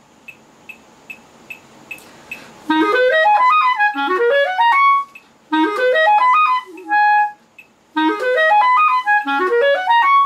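Steady clicks keeping a beat, about two and a half a second, then a clarinet enters about two and a half seconds in. It plays slow triplet practice runs that climb quickly from the low register, repeated in three short phrases, with one held note in the middle.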